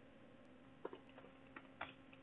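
Near silence with a few faint, isolated computer keyboard clicks about a second in, as typing begins.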